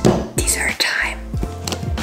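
A short whispered voice in the first second, over background music with a steady bass line.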